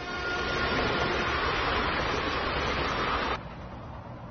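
Passenger train running at speed on an elevated track, a steady rushing rumble. About three and a half seconds in it drops to a quieter, duller rumble as heard inside the carriage.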